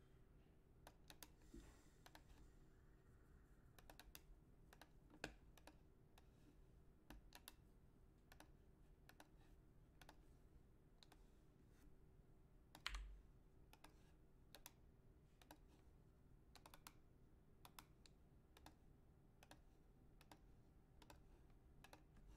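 Faint, scattered clicks of a computer keyboard and mouse over a low steady hum, with one louder click about thirteen seconds in.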